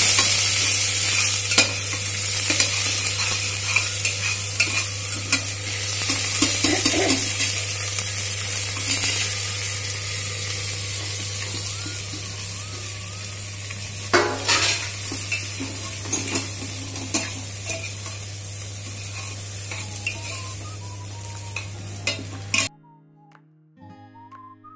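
Onions, peas and ajwain sizzling in oil in a steel pressure cooker, stirred with a metal spoon that scrapes and clicks against the pot. There is a louder clatter about halfway through as dry vermicelli is tipped in. The sizzle slowly fades and then cuts off suddenly near the end, leaving faint music.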